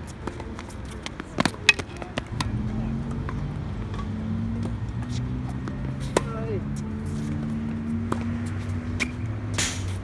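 Tennis rally on an outdoor hard court: sharp pops of racket strings hitting the ball and of the ball bouncing, at irregular intervals, the loudest about a second and a half in. From about two seconds in, a steady low hum runs underneath.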